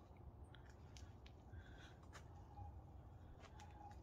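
Near silence, with a few faint, short yips from a dog in the background.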